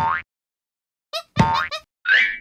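Cartoon sound effects: a short springy blip with a rising pitch right at the start, then a quick run of bouncy blips about a second in, the longest again sliding upward in pitch.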